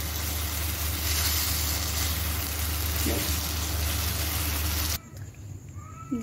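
Chicken pieces sizzling as they fry in oil and masala in a pan, a steady sizzle over a low hum: the bhuna stage, fried until the oil separates. The sound cuts off suddenly about five seconds in, leaving a much quieter background.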